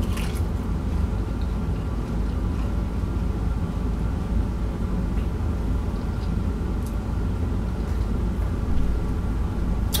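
A person biting into and chewing battered fried food, with a few faint crunches. A steady low hum runs under it and is the loudest thing heard.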